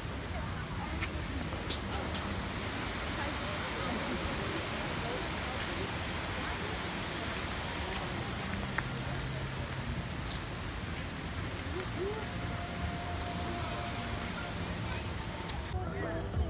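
Steady rush of water spilling over rocks and a waterfall, cutting off suddenly near the end, with faint voices in the background.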